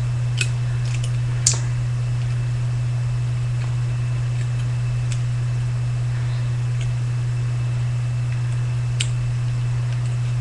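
A steady low hum throughout, with a few faint clicks and crinkles of thin aluminium soda-can petals being bent back by hand, the sharpest about a second and a half in and one more near the end.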